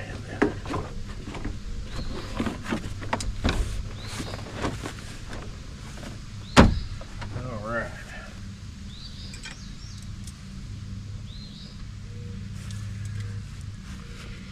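Clicks, rattles and knocks of hands working on a pickup's door and plastic door panel, busiest in the first few seconds, with one sharp knock about six and a half seconds in.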